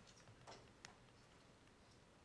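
Near silence with a few faint, irregular clicks, about half a second and just under a second in: a stylus tapping on a tablet PC screen while writing.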